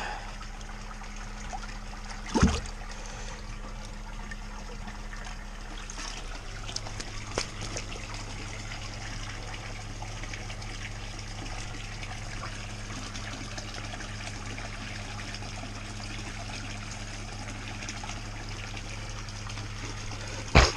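Water from a filter pump's PVC return pipe splashing steadily into a pool pond. A single brief louder knock or splash comes about two and a half seconds in, and a low hum joins about six seconds in.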